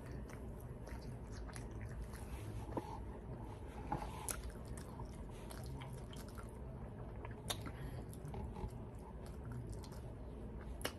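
A person chewing cheesy bread close to the microphone, with many small, scattered wet mouth clicks and smacks; a few are louder, about four seconds in and again past the middle.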